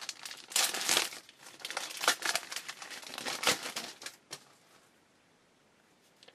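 Foil wrapper of a baseball card pack being torn open and crinkled by hand, a dense run of crackling rustles that stops about four seconds in, followed by a single light tick.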